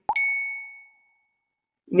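A single bell-like ding: one sharp strike that rings with a clear high tone and fades away over about a second.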